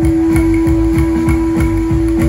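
Live band music played loud through a PA, with guitar: a held note rings over a fast, driving bass beat of about four to five pulses a second.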